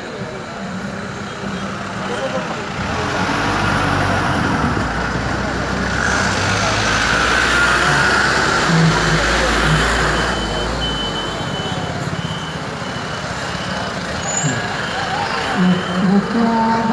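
A bus engine running as the bus drives slowly past close by, building up over the first few seconds, loudest about halfway through, then easing off, over the noise of a street crowd.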